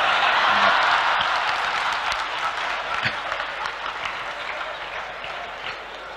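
Audience applause that breaks out suddenly, is loudest at the start, and fades away slowly over several seconds.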